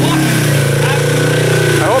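An off-road vehicle's engine idling steadily close by, its pitch holding even.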